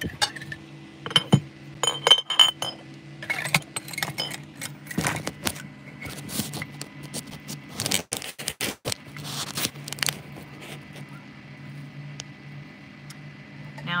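Handling clatter of cookware and small objects: a run of clinks, knocks and scrapes, some ringing briefly, thick in the first ten seconds and then quieter, over a steady low hum.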